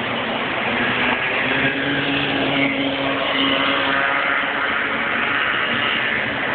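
Bambino racing kart engines droning together as the karts lap the circuit, a steady whining hum whose pitch lifts slightly about a second and a half in.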